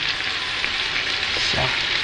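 Floured beef cubes and chopped onion sizzling in hot oil in an electric skillet: a steady frying hiss as the onions go in on top of the browned beef.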